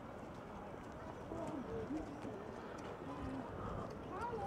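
Quiet harbourside background: faint, distant voices of passers-by, with a few light ticks and clicks.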